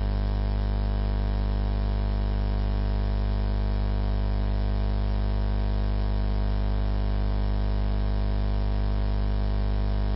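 Steady electrical mains hum and buzz in the sound system, a fixed tone with many overtones that does not change. It is loud, close to the level of the speech around it.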